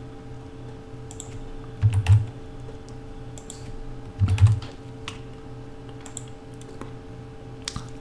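Computer keyboard keystrokes in two short clusters, about two seconds in and again about four seconds in, with a few lighter clicks between, over a steady low hum.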